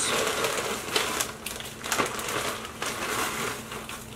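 Hash browns being tipped out of their bag into a bowl of creamy mixture: an irregular rustling crunch with crackly bits, tailing off towards the end.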